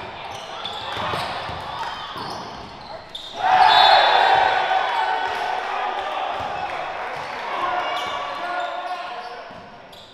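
Live game sound from a basketball gym: a basketball bouncing on the hardwood under players' and spectators' voices echoing in the hall. About three and a half seconds in, the voices swell suddenly into a loud burst of shouting, then die away.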